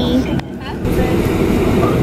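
Steady low rumble of an airliner cabin, with voices faintly over it and a brief drop in level about half a second in.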